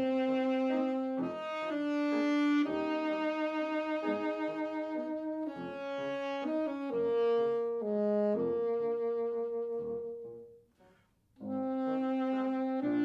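Alto saxophone playing a melody of long held notes over grand piano accompaniment. The music stops briefly near the end, then resumes.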